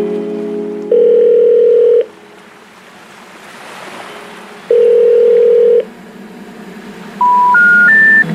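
Telephone call tones in the background music track: two long, steady ringback beeps about four seconds apart, then three short beeps stepping up in pitch near the end, like a number-unobtainable signal.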